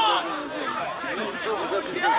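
Several indistinct voices of football players and coaches calling out to one another, overlapping without clear words.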